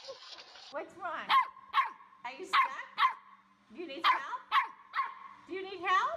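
A dog barking: about seven short, sharp barks, mostly in pairs.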